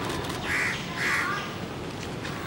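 A crow cawing twice, the calls about half a second apart, over steady low background noise.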